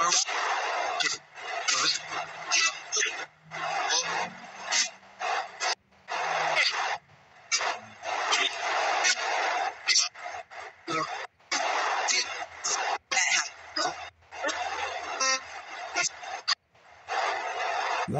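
Spirit box sweeping through radio stations: choppy static broken every fraction of a second, with snatches of radio voices. The investigator takes these fragments for spirits saying the word 'investigate', broken up over three or four seconds.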